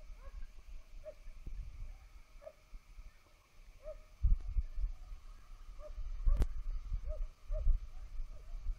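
Faint, short animal calls repeated about once a second, over gusts of wind rumbling on the microphone, with one sharp click about six seconds in.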